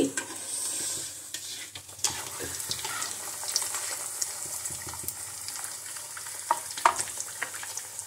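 Suji (semolina) and potato rolls deep-frying in hot oil in a kadhai: a steady sizzle of bubbling oil, with a few light knocks of a slotted spatula against the pan near the end.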